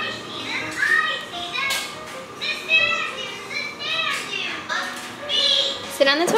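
Children's cartoon playing on a TV: high-pitched children's voices speaking, with music.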